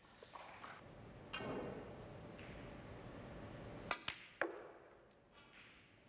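Snooker cue striking the cue ball about four seconds in, followed quickly by sharp clicks of ball hitting ball, three clicks in all within half a second, over the faint hush of the arena.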